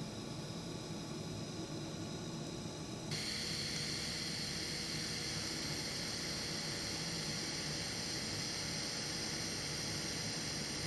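TIG welding arc giving a steady hiss as a drain-plug fitting is welded onto a stripped oil pan. About three seconds in the hiss abruptly becomes louder and brighter.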